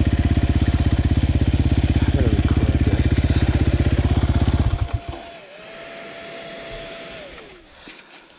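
Husqvarna 501 single-cylinder four-stroke enduro engine running steadily at low revs, with an even firing pulse. The engine cuts out abruptly a little past halfway.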